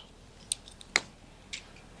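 A wedge striking a golf ball off bare, hard-packed dirt: one sharp click just under a second in, with a fainter tick about half a second before it. The strike is fairly solid, a "pretty good one".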